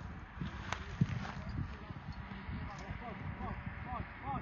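Footsteps rustling and crunching through dry weeds and long grass, heard as irregular short clicks and scrapes.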